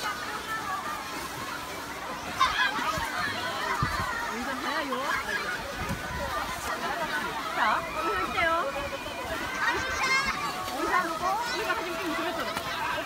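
Many children's voices at a busy sledding slope: high shouts and squeals rising and falling over a background babble of a crowd.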